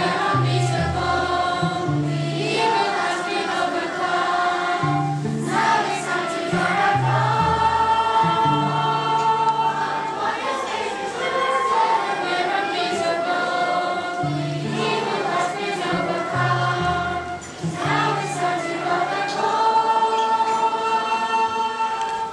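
A choir of many voices singing together, holding long notes over lower parts in phrases that recur.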